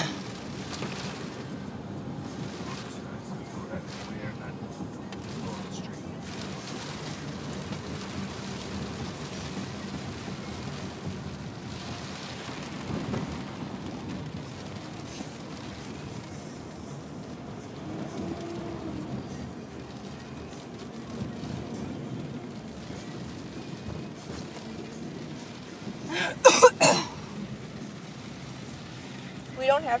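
Steady road and rain noise inside a moving car's cabin: tyres on a wet road and rain on the car. A brief loud burst of a voice breaks in near the end.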